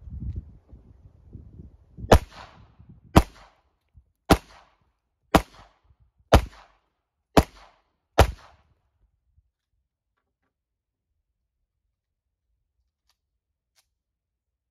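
Seven shots from a Sig Sauer P210 American 9mm pistol, fired at an even pace of about one a second.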